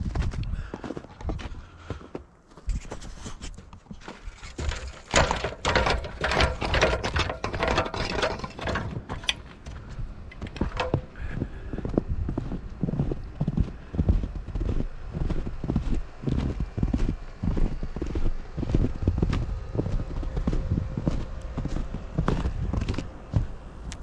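Footsteps tramping through fresh snow at a steady walking pace. A cluster of louder knocks and scrapes comes about five seconds in, with clothing and camera handling noise, before the evenly spaced steps carry on to the end.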